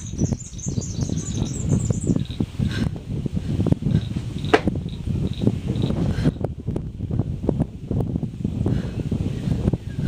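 A bird's high, quick chirping trill in the first two seconds, over a steady low rumbling outdoor noise, with a couple of sharp clicks.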